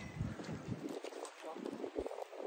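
Wind buffeting a handheld phone's microphone, a low rumble that drops away about halfway through.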